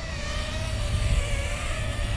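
Brushless motors and props of a 65 mm toothpick micro quadcopter whining in flight, a steady high tone that wavers slightly in pitch, over a low rumble.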